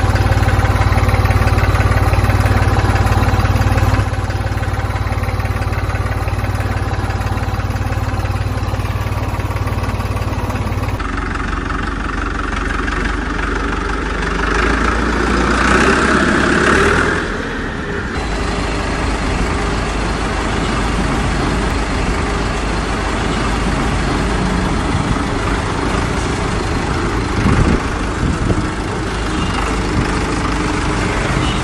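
Tractor engine running steadily at idle, a low rumble. Its sound shifts about eleven seconds in, with a louder stretch a few seconds later.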